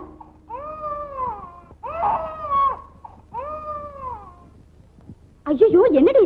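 Women wailing: three drawn-out high cries, each rising and then falling, then a louder, quickly wavering wail starting near the end.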